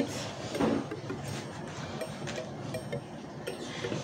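Faint scratching of chalk drawn along a ruler across fabric, with a few light ticks.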